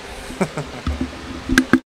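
A man laughing quietly under his breath into a close microphone, with a few sharp clicks, cut off abruptly near the end.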